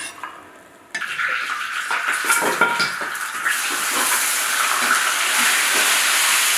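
Chopped garlic and chillies going into hot oil in a large wok: a sudden sizzle starts about a second in, with a metal spatula scraping and clicking against the wok, then settles into a steady frying hiss.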